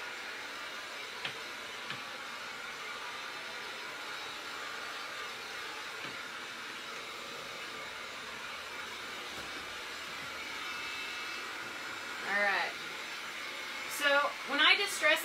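Corded electric heat gun running steadily, a constant blowing hiss from its fan, with a couple of faint knocks within the first two seconds.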